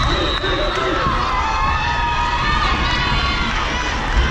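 Volleyball spectators cheering and shouting in a large arena, with many voices overlapping at a steady level.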